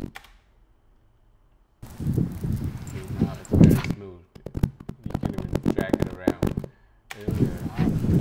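A single mouse click, then about two seconds later the clip's own recorded location sound plays back: a voice-like sound mixed with many sharp knocks, broken by a short gap about seven seconds in.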